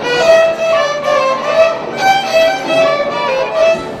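Violins playing a melody, one short note after another stepping up and down in pitch.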